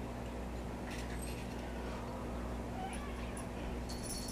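Quiet room tone with a steady low hum, and a faint short cat meow about three seconds in.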